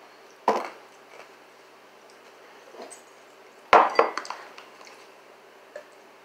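Tableware knocking and clinking on a wooden table as cups and forks are handled: one sharp knock about half a second in, then a louder cluster of clinks and knocks a little before four seconds in.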